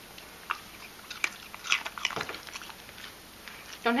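A pet crunching a piece of raw carrot: irregular crisp bites and chews.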